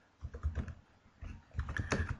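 Computer keyboard typing: a run of several separate keystrokes.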